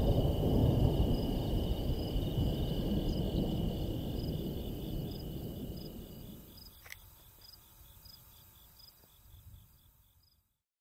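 Insects chirping outdoors at night, a steady high trill with an even pulse, over a low rumble that dies away over about six seconds. A single sharp click sounds about seven seconds in.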